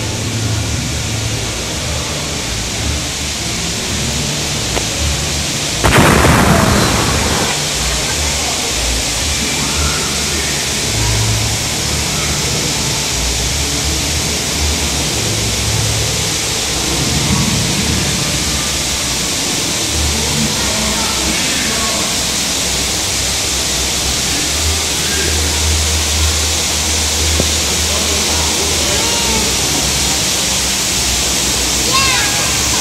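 Steady rushing hiss of falling water from a waterfall, with a sudden loud crash about six seconds in that dies away over a second or so.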